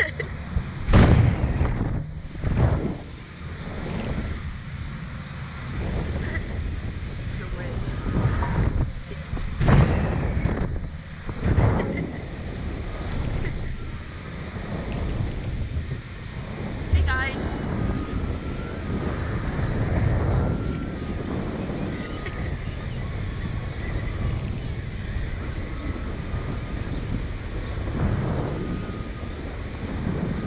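Wind buffeting the microphone of a camera on a swinging Slingshot ride capsule, a low rumbling rush in uneven gusts, strongest in the first twelve seconds and steadier after.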